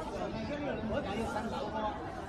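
Only speech: people talking, with more than one voice overlapping.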